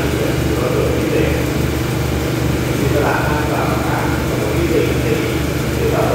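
Diesel engines of a State Railway of Thailand diesel railcar train idling steadily while it stands at the platform, a low even throb, with people's voices over it.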